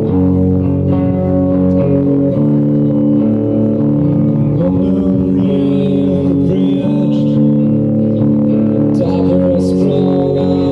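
Live rock band playing a slow song through a small-venue PA: sustained guitar chords over bass guitar, the chord changing about every two seconds.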